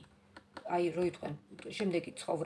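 A woman speaking in short phrases, with a few light clicks in the pauses between them.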